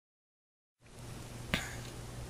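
Silence, then faint room noise with a low steady hum as recording begins, and a single sharp click about a second and a half in.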